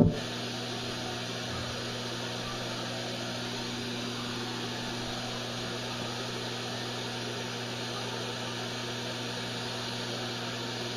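Steady hiss with a low electrical hum from a switched-on sound system, with no music playing.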